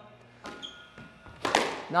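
Squash ball impacts in the court: a faint knock about half a second in, then a sharp, loud smack with a ringing echo about a second and a half in.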